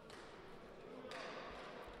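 Faint sports-hall ambience with a low hiss that rises slightly about a second in.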